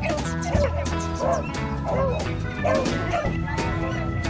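A beagle gives about five short yelps that waver up and down in pitch, spread across the few seconds, over steady background music.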